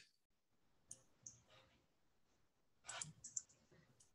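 Near silence with a few faint, short clicks: one or two about a second in and a quick cluster around three seconds in.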